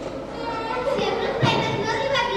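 A child's voice speaking, with a short thump about a second and a half in.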